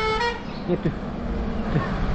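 A motor-vehicle horn with several tones ends about half a second in. After it comes a steady low rumble and hiss of wind and road noise on the camera of a moving bicycle.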